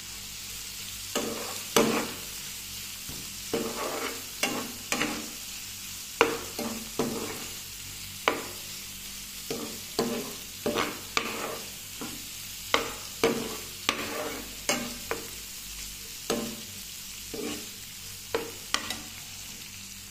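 Metal spoon scraping and knocking against the pan as a kachki fish chorchori is stirred, over a steady frying sizzle. The strokes come irregularly, roughly one or two a second.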